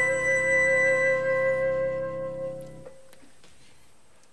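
Harmonica, saxophone and keyboard holding a final sustained chord that the players cut off together about three seconds in, leaving a faint fading tail.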